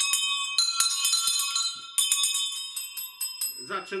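Small bells jingling. Several high ringing tones sound together and are shaken or struck afresh twice, then ring on.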